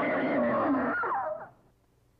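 A woman's high-pitched scream, held and then falling in pitch as it breaks off about one and a half seconds in.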